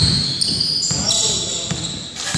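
A basketball bounced a few times on a gym floor, each bounce a short thud. High-pitched sneaker squeaks on the court run over it.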